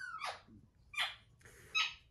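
Small plastic squeeze bottle of Dollar permanent-marker refill ink being squeezed to drip ink into an opened marker: a short falling squeak at the start, then three brief airy squirts less than a second apart.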